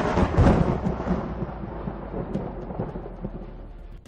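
A sudden loud boom that trails off into a long rumble, fading away over about four seconds.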